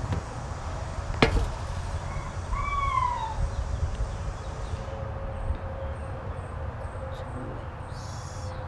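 A steady low rumble, with a sharp click about a second in and a short pitched call that rises then falls about three seconds in.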